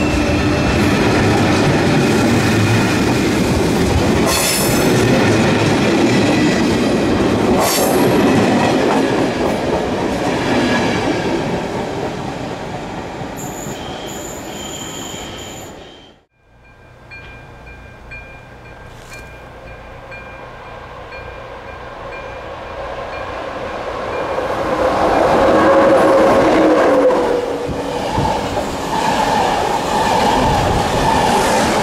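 A České dráhy double-deck electric commuter train rolls past with wheel rumble and clatter that slowly fades as it leaves, with a high wheel squeal just before the sound cuts off about halfway through. Then, over a steady regular pinging from the level-crossing warning, a second passenger train of coaches approaches and passes loudly near the end.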